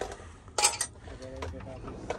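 Metal hand tools clinking together in a tool chest drawer: a quick cluster of sharp clinks about half a second in.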